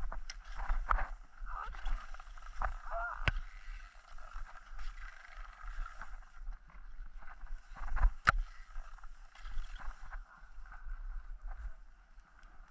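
Skis sliding and scraping over groomed snow: a steady hiss with a low rumble of wind on the microphone, broken by several sharp knocks, the loudest about eight seconds in.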